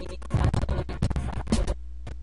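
Record scratching on a virtual DJ turntable: a fast burst of scratches from about a third of a second in to just before the end, over a steady low hum.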